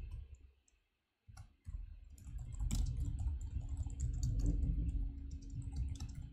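Typing on a computer keyboard: a quick run of key clicks over a dull low thud from each keystroke, with a short pause about a second in.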